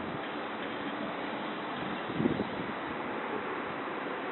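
Steady outdoor hiss of wind on the microphone, with one short, soft sound about two seconds in.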